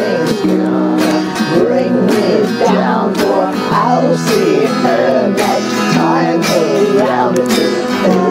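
Instrumental break of a country-tinged rock song: a lead guitar plays a melodic line with bent notes over strummed acoustic guitar, bass notes and a steady beat.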